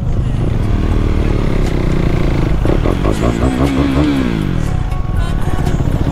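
Motorcycle engine running at road speed under a moving rider; about three seconds in, a pitched engine note rises, wavers and falls away over about a second.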